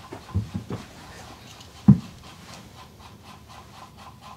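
A hairbrush rubbing in repeated strokes through long hair, with a few soft knocks in the first second and one sharp thump about two seconds in.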